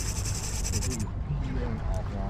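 A fishing reel's drag giving a rapid, high-pitched clicking buzz as a hooked false albacore pulls line, stopping about a second in.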